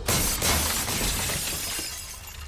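Glass shattering: a sudden crash with a bright spray of breaking glass that trails off over about a second and a half.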